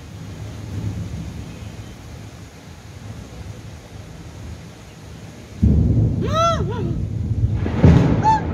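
Heavy rainstorm with wind, a steady low wash of rain and gusting air. About five and a half seconds in, a sudden loud low rumble sets in and carries on.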